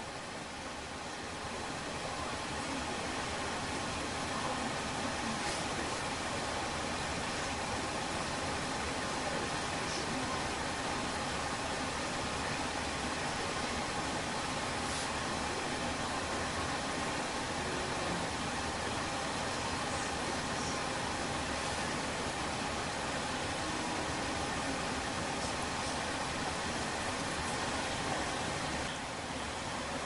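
Steady, even background noise with no distinct events, like a constant hiss or fan-like rush. It swells slightly about a second in and falls away just before the end.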